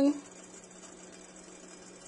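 A spoken word ends right at the start, then quiet room tone with a steady low hum.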